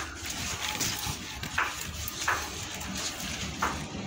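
Handling noise from repotting a monstera: a few short rustles and scrapes as its large leaves and roots are pushed about in the pot and brush close to the microphone.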